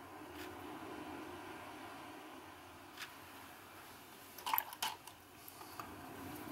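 Faint wet dabbing and small taps of a watercolour brush being worked in paint, with a louder cluster of quick taps about four and a half seconds in, over a low room hum.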